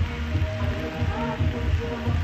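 Caribbean background music with a heavy, pulsing bass line, over a faint sizzle of broccoli and carrots frying in the pan.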